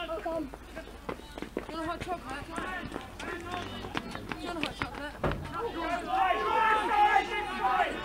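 Several voices shouting and calling during open play in a football match, with short knocks of players' running feet. There is a louder thump a little after five seconds in, and the shouting swells in the last two seconds.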